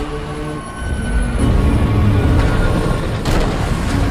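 Film trailer soundtrack: a deep, heavy rumble of sound effects under sustained low music tones, with one sharp hit about three seconds in.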